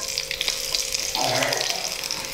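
Hot oil sizzling and crackling in a small pan as chopped onion is dropped into it with tempering seeds.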